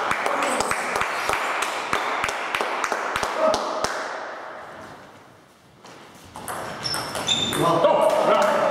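Table tennis ball clicking off bats and the table, several sharp ticks a second, over voices echoing in a sports hall. The sound fades down a little over five seconds in, then comes back with raised voices near the end.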